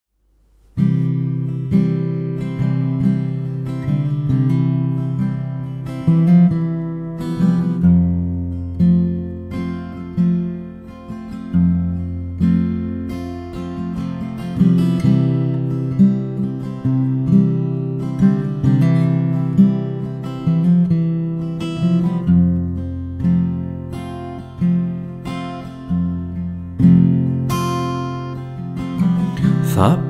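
Instrumental intro on acoustic guitar: a slow, steady pattern of plucked chords, about one a second, with the bass note shifting every few seconds. It starts about a second in.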